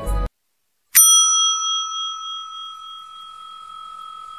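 Music stops abruptly a moment in. After a short silence, a single bell ding strikes about a second in and rings on, slowly fading: the notification-bell sound effect of an animated subscribe button.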